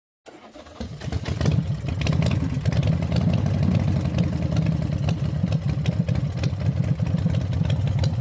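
A vehicle engine starting up, its level rising over the first second, then running steadily at a low, pulsing idle.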